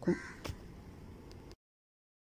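One light metal clink against a ceramic bowl about half a second in, as a steel spoon and tumbler work in a bowl of batter, with a fainter tick later; the sound then cuts to dead silence about one and a half seconds in.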